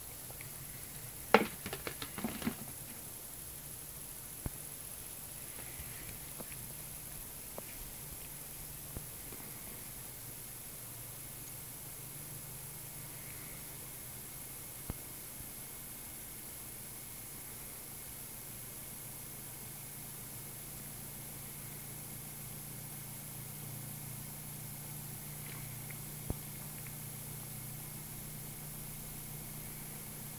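Small homemade pulse motor, a magnet rotor driven by pulsed coils, starting with a few sharp clicks and knocks in the first few seconds, then running as a faint, steady low hum.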